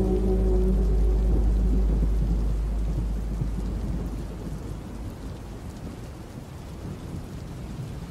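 Steady rain, with a deep low rumble and the last held low notes of the slowed song dying away over the first few seconds. The rain grows fainter toward the end.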